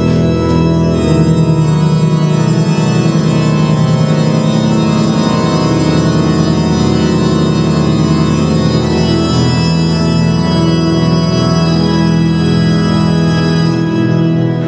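Recorded pipe organ music: a Baroque piece from 1703 played as long, sustained full chords that hold steadily throughout.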